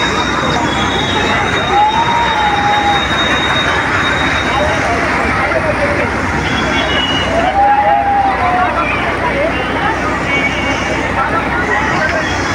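Steady, loud fairground din: amusement rides running and a crowd, with a few voices calling out.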